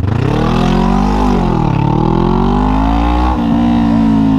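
Honda CBR500R motorcycle's parallel-twin engine accelerating hard. Its pitch climbs, eases a little over a second in, climbs again, then drops sharply at a gear change near the end and holds steady.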